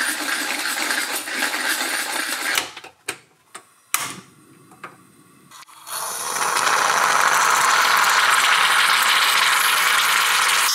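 A steady noise for the first few seconds, then a few sharp clicks. From about six seconds in, a Bialetti Brikka moka pot on a gas camping stove hisses loudly and steadily as it pushes the coffee up into the top chamber, where it foams.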